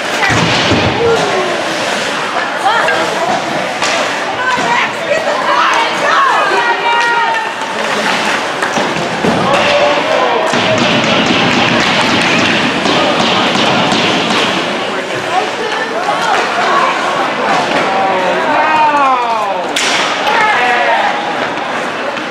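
Ice hockey play in a rink: a player is checked into the boards at the start with a heavy thud, followed by scraping skates and sticks amid steady shouting and chatter from spectators. A sharp knock comes near the end.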